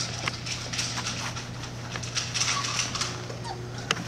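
A mother dog and her young puppies moving and sniffing about on bedding: soft scuffles and light clicks over a steady low hum.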